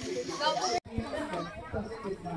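Several people chatting in the background, no single voice standing out, with a sudden short dropout just under a second in.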